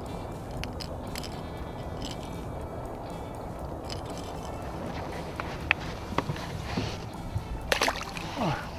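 A few sharp clicks as a rattlin's treble hooks are worked free of a small fish's mouth, then a burst of splashing near the end as the fish is dropped back into the water, over a steady background noise.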